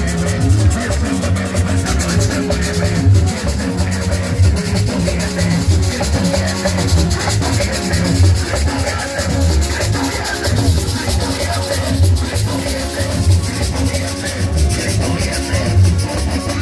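Live band playing a lively chorus: a güira scraped in a steady, fast rhythm over conga drums and an electronic keyboard with a heavy bass line.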